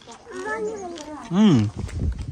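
People's voices talking, with a rise-and-fall exclamation about a second and a half in, then a low rumble of the phone being swung about near the end.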